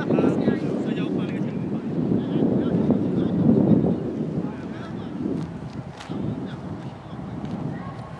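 Wind buffeting the microphone in uneven gusts, with distant shouting voices and a single sharp knock about six seconds in.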